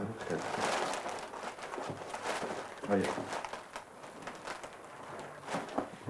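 Crinkling rustle of gift wrapping and paper being handled, mostly in the first two seconds, with a short spoken word about halfway through.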